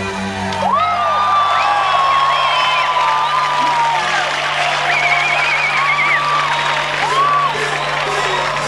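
Stadium crowd cheering and whistling over a low note held steady by the band, with high sliding and wavering pitches rising and falling above it.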